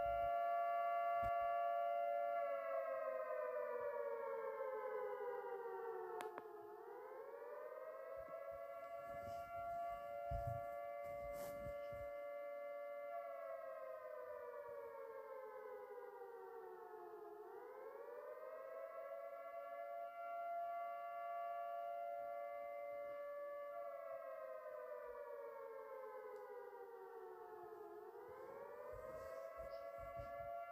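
Civil-defence-style siren sounding an alert in long, repeating wails. Each cycle holds a steady tone for several seconds, slides slowly down in pitch, then sweeps quickly back up, about every eleven seconds.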